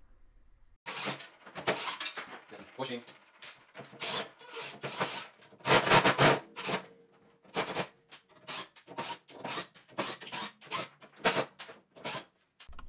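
A driver backing screws out of a cash drawer's steel bottom cover, heard as an irregular series of short metallic scraping and rasping strokes.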